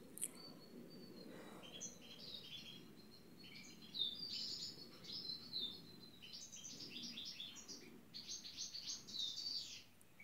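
A small bird chirping and twittering in quick runs of short, high notes, faint, starting about a second and a half in and growing busier in the second half.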